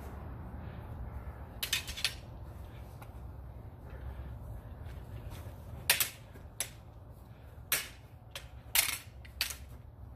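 Backswords striking in fencing, sharp clacks of the weapons hitting. There is a quick run of three strikes about two seconds in, single strikes in the second half, and a tight cluster near the end, all over a steady low hum.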